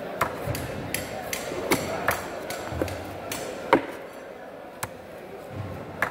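Large knife cutting through a barracuda on a wooden chopping board: a series of irregular sharp knocks as the blade strikes the board, the loudest a little past halfway.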